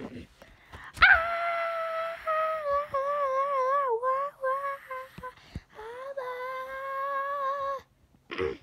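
A child's voice making a long, high-pitched wordless whine, held in drawn-out notes that waver and slide in pitch, starting suddenly about a second in, with short breaks in the middle, and stopping just before the end.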